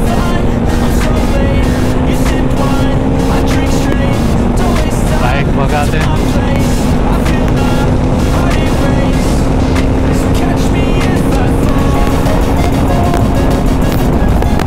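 Bajaj Dominar 400's single-cylinder engine pulling hard at highway speed, a steady drone that climbs slightly and then settles a little lower about four seconds in, over heavy wind rush. Background music plays over it.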